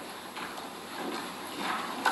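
Courtroom room tone with a few faint, scattered knocks and shuffling sounds, and a faint murmur of voices near the end.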